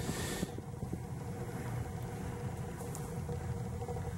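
Steady low mechanical hum throughout, with a brief rustling hiss at the very start.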